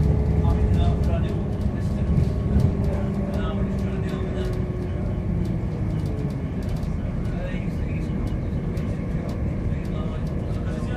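Interior of a Class 170 Turbostar diesel multiple unit: a steady low running rumble with a whine that falls in pitch as the train slows into a station.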